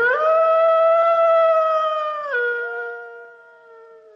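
A singer's long held final note of the country song, gliding up into pitch and held for about two seconds, then stepping down to a lower note joined by a second voice and fading out.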